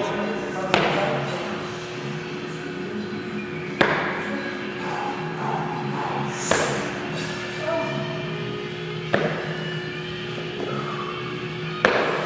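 Five dull thuds of a pair of dumbbells being worked through repetitions, each roughly three seconds apart, over steady background music.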